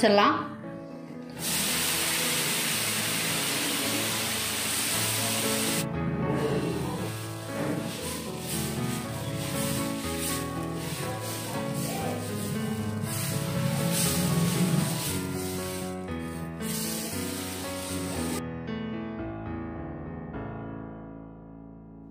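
Instrumental background music with stepping notes, fading out near the end. For the first few seconds a steady rushing noise covers it, starting about a second and a half in and cutting off suddenly around six seconds: a kitchen mixer grinder running with its lid held down.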